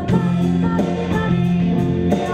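A woman singing a Scottish folk song with instrumental accompaniment, in sustained, held notes.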